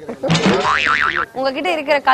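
A cartoon 'boing' sound effect lasting about a second, its pitch warbling rapidly up and down several times, followed by a woman speaking.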